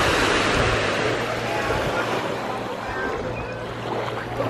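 Small waves washing onto a sandy beach, a steady hiss of surf that is strongest in the first second and then eases off.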